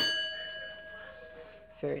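A large twin-bell alarm clock's metal bell struck once, ringing with several clear tones that fade away over about a second and a half.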